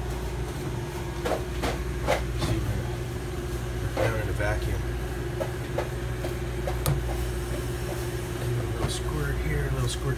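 Small refrigeration compressor of a salad rail cooler running with a steady hum while R-134a refrigerant is added; the tech takes the system to be low on charge. A few sharp clicks and knocks sound in the first few seconds and again about seven seconds in.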